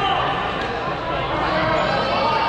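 Many players' voices calling out over one another in a large gymnasium during a dodgeball game.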